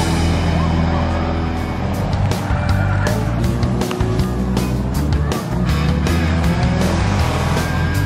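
Race cars running on a paved track, their engines heard under background music with a steady beat.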